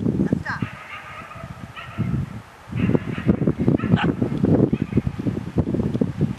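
A pack of puppies playing rough: a high wavering whine about half a second in, then a run of rapid, rough low growling sounds from about three seconds on.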